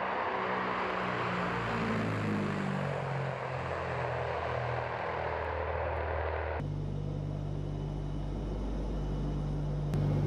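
Turboprop engines of a Tu-95 strategic bomber running on the runway, with engine tones shifting in pitch. About six and a half seconds in, the sound cuts abruptly to a steadier, deeper engine drone.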